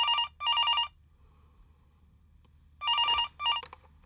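Corded telephone ringing in a double-ring pattern: two short rings at the start, a pause of about two seconds, then two more rings.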